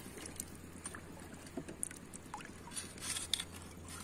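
Shallow seawater sloshing and lapping quietly, with scattered faint clicks and a small splash about three seconds in, over a low steady hum.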